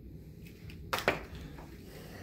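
Quiet indoor room tone with a single short click about a second in, followed by one brief spoken word.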